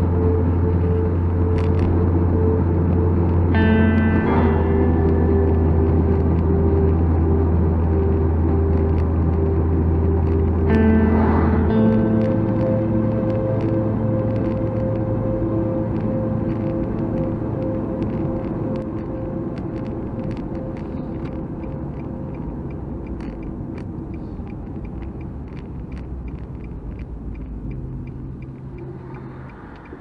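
Background music: slow, held chords that change every few seconds, fading out gradually over the second half.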